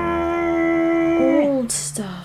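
A person's voice holding one long, steady 'ooooh' for over a second, then sliding down in pitch and stopping.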